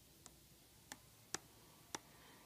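Four faint, short clicks, irregularly spaced, of a stylus tapping a tablet touchscreen, against near silence.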